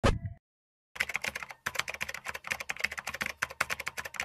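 A sudden loud hit that dies away within half a second, then, after a short gap, a rapid, irregular stream of sharp clicks like typing on a keyboard.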